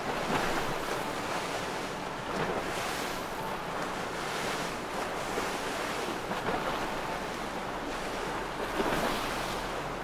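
Steady rush of wind on the microphone mixed with the wash of river water around moored boats, swelling and easing a little, with a faint low steady hum underneath.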